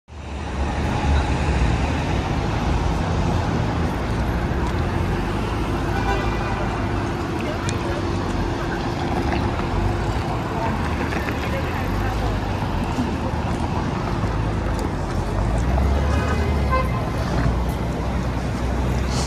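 City street ambience: a steady rumble of passing cars and traffic, with voices of passersby now and then.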